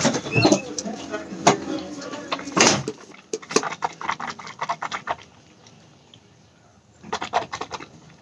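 A metal spoon clicking and scraping in a container as it stirs and scoops coconut oil mixed with turmeric. It comes in quick runs of taps, goes quiet about five seconds in, and picks up again near the end.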